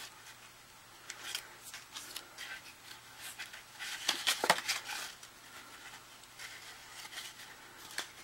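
Cardstock rustling and crackling as fingers handle and press paper cupcake cut-outs into a pop-up box card, in short scattered scrapes, the loudest a little after four seconds in.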